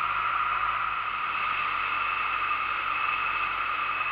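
2008 Honda Nighthawk 250 motorcycle cruising steadily: constant wind and road rush with a low engine hum underneath.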